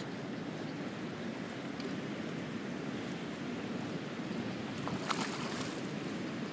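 Steady rush of water, with one short sharp sound about five seconds in.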